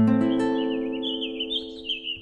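An acoustic guitar's last strummed chord ringing out and slowly fading, while a bird sings a run of high, quick chirps starting about half a second in.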